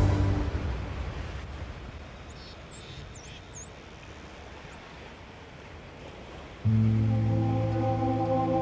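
Soundtrack music fades out, leaving a soft background hush. In it a dolphin's high whistles sweep up and down several times in quick succession. Near the end a low, sustained music chord comes in suddenly.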